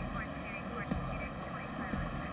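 Low, indistinct talk between two men over a steady outdoor background hum, like distant traffic or an aircraft.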